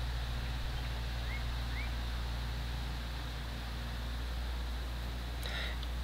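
A steady low hum with an even background haze, and two faint short rising chirps about a second and a half in.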